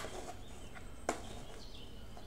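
Two sharp clicks about a second apart over a faint steady hiss, with a faint high bird call near the end.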